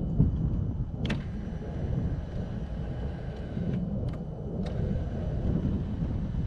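Electric windscreen adjuster of a Yamaha FJR1300 ES raising the screen: a click about a second in, then a thin motor whine for about two and a half seconds that stops, followed by two more short clicks. A steady low rumble runs underneath.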